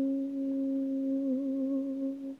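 Unaccompanied voice holding one long, steady final note of an a cappella song, with a slight waver about one and a half seconds in.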